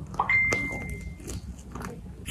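Mouth noises of a person chewing a bite of cream puff, with small clicks. A steady high beep starts shortly in and lasts just under a second.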